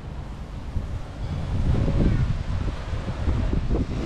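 Wind buffeting the camera microphone: an uneven low rumble that gusts up about a second and a half in and again near the end.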